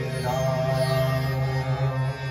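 Male voice holding a sung note in a Hindustani devotional bhajan in raga Bhairavi, over a steady low drone from harmonium and tanpura.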